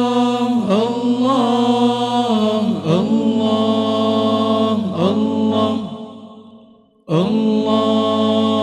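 Group of male singers chanting Arabic sholawat unaccompanied, in long held, slowly bending notes. The singing fades away near the end, then comes back in suddenly.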